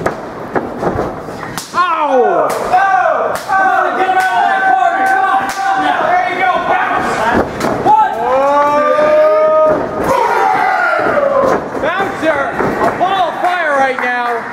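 Bodies slamming onto a wrestling ring's canvas, several thuds in the first few seconds, under long drawn-out shouts of men reacting to the hits.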